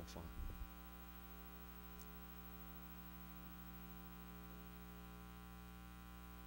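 Faint, steady electrical mains hum running under an otherwise quiet room.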